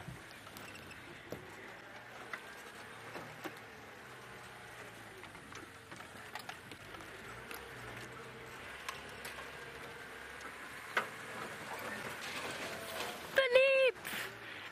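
Safari game-drive vehicle on the move: a low, steady engine hum with scattered knocks and rattles.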